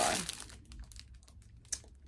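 Faint crinkling of a plastic-wrapped package being handled and turned over, with scattered light crackles and one sharper click near the end.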